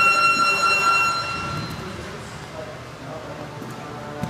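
A loud electronic buzzer tone that starts suddenly, one steady note with overtones, fading out after about a second and a half.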